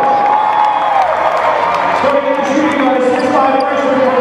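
Arena public-address announcer's voice, drawn out in long held notes and echoing in the hall, over a cheering crowd, with a few sharp knocks.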